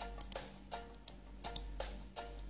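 Faint background music with a light ticking beat, short plucked-sounding notes about three times a second, over a low steady hum.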